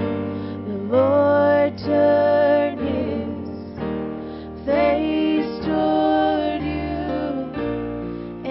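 Live worship band music: voices singing sustained phrases over keyboard and band accompaniment.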